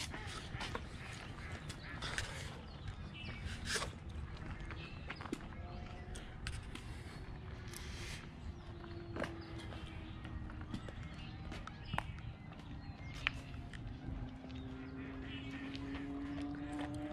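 Footsteps and walking noise on a paved path, with wind rumbling on the microphone; a faint drone that rises slowly in pitch comes in near the end.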